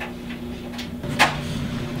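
A steady low hum, with a short knock a little over a second in and a fainter click just before it.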